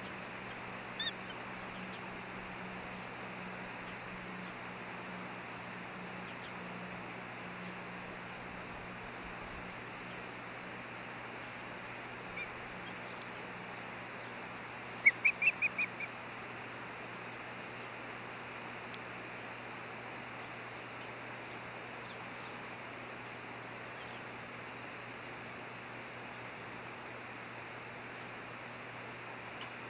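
Osprey calling: a single short chirp about a second in, then a quick run of about six sharp, high whistled chirps in the middle, over a steady hiss.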